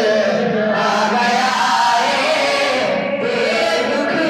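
A naat being sung: a man's voice chants long, held melodic lines through a microphone, with no instruments.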